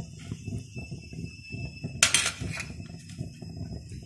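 Cut gram-flour (besan) pieces being put into a steel pot of thin curry: soft, irregular handling and kitchen noises, with one sudden, louder noise about halfway through.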